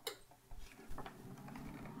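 NeXTcube powering on: a click, then about half a second in its fans start and run as a steady low hum with a few light clicks. It runs quiet, its noisy old hard drive replaced by a SCSI2SD card adapter.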